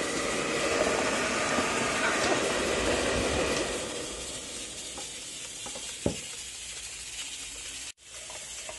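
Air fryer fan running with a steady whooshing hiss, then winding down about three and a half seconds in as the machine is switched off, leaving a faint background. A single low knock comes about six seconds in.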